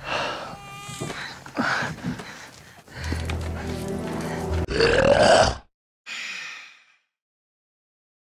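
Film soundtrack excerpt: music with voices, building to a loud rising sound about five seconds in that cuts off abruptly, followed by a brief fainter burst and then silence.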